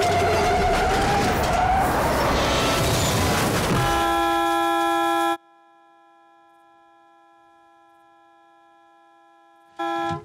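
Box truck sliding to a stop in dirt with a loud, rough noise, then its horn sounding one long steady blast from about four seconds in. The horn drops to faint and distant after a moment, then is loud again at the very end.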